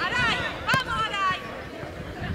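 High-pitched shouting voices, strongest in the first second and fading off, with one sharp knock about three-quarters of a second in.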